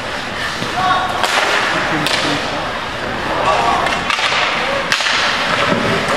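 Live ice hockey play: skates scraping the ice under a few sharp cracks of stick and puck, with brief shouts from players and spectators.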